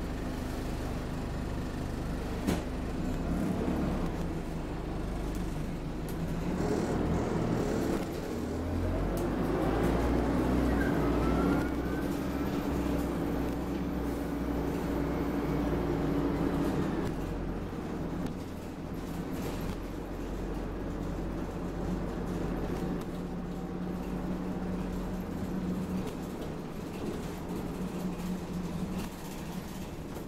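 Dennis Dart SLF single-deck bus heard from inside the passenger saloon, its diesel engine and drivetrain droning as it drives. The drone grows louder and rises in pitch about a third of the way in as the bus pulls harder, then eases back a little past halfway, with a single sharp click early on.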